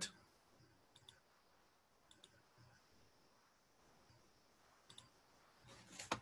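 Near silence broken by faint computer mouse clicks, each heard as a quick double tick, about a second in, about two seconds in and near the end.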